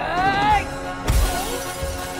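A man's drawn-out yell, then about a second in a sudden loud crash of shattering glass with a heavy thump, over a dramatic film score.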